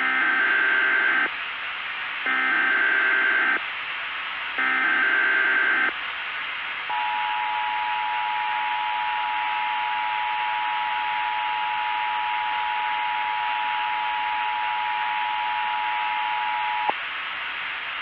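Emergency Alert System SAME header tones: three modem-like data screeches, each a little over a second long, then the EAS attention signal, a steady two-tone alarm held for about ten seconds that cuts off sharply, all over a steady hiss.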